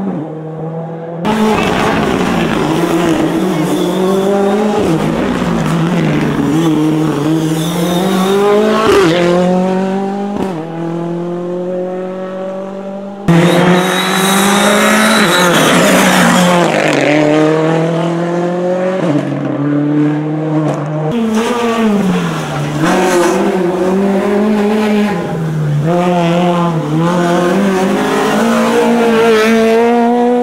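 Rally car engines at speed, revving hard, their pitch repeatedly climbing and dropping through gearshifts and lifts for corners. The sound changes abruptly twice, as one car's pass gives way to the next.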